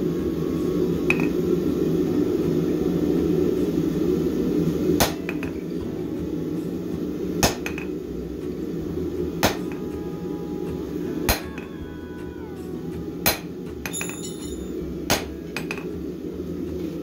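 Hand hammer striking red-hot bar stock on a steel anvil: six single blows about two seconds apart, starting about five seconds in, squaring up the boss of a pair of flat-nib tongs. A steady low rushing noise runs underneath, louder before the blows begin.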